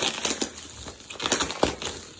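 Plastic bubble wrap being handled and pulled open, crinkling and rustling with irregular sharp crackles.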